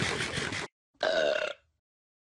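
A long, rattling burp that cuts off suddenly, then after a brief pause a second, shorter burp that falls in pitch.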